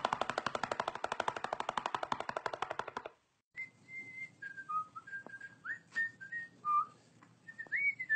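A fast, even rattle of sharp pulses, about a dozen a second, for about three seconds, then after a brief break a tune of short whistled notes that hold and slide between pitches.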